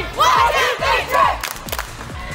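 A group of teenage girls shouting together in a team cheer, several short high calls in quick succession, then two sharp smacks near the end.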